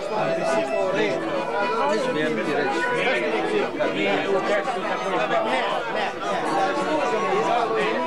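Many people talking at once: overlapping conversation and chatter, with no single voice standing out.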